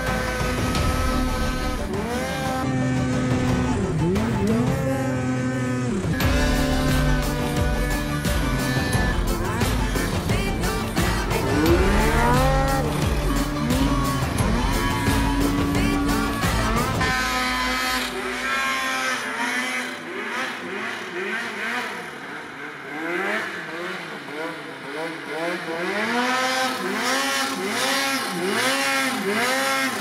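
Mountain snowmobile engines revving up and down again and again, over background music with a steady beat. Late on, the revs come as quick throttle blips about once a second, and the music's bass has dropped away.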